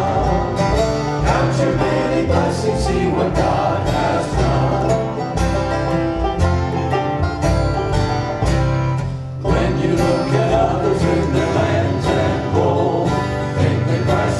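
Country-bluegrass hymn played on strummed acoustic guitars and a picked banjo, with voices singing along.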